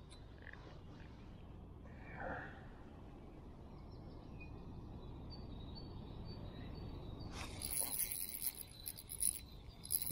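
Quiet outdoor ambience beside a pond: a low steady hiss with faint thin high chirps from about halfway through. In the last couple of seconds there are a few short scratchy handling noises from the rod and reel as a fish is hooked.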